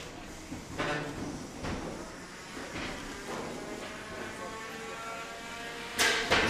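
3 lb combat robots in the arena: a few sharp knocks of the bots hitting and scraping in the first half, then a steady whine from a spinning weapon through the second half.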